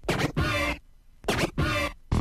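Two turntable record-scratch sound effects, about a second apart, each lasting a little over half a second.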